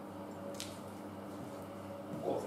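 Steady low hum with a single light click about half a second in, as a floor jack's handle is worked.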